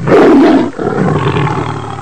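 Tiger roaring: one long, rough roar, loudest in its first half second and then trailing on more quietly.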